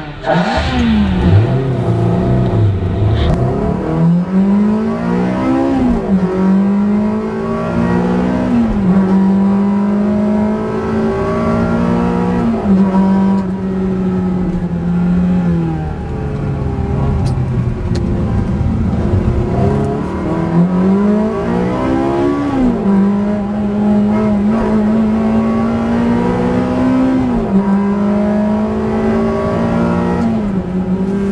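Ferrari 360 Modena's V8 engine under hard acceleration, heard from inside the cabin. The revs climb and drop sharply again and again as the F1 paddle-shift gearbox changes gear, with steadier stretches between the pulls.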